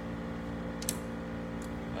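Steady hum of a room humidifier running, with one short click about a second in.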